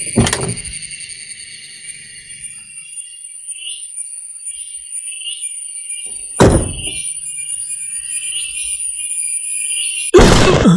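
Film soundtrack: a sustained high, eerie suspense score with faint repeating chirps, punctuated by two sharp hits that ring out, one at the very start and one about six and a half seconds in.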